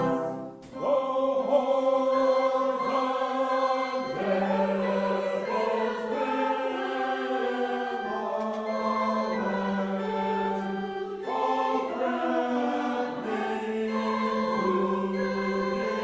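A held brass chord breaks off about half a second in. After a brief pause, a mixed choir of men's and women's voices sings a hymn in parts.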